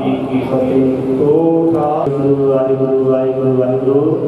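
Sikh kirtan: a man chanting in long held notes, his pitch bending once partway through, with a harmonium.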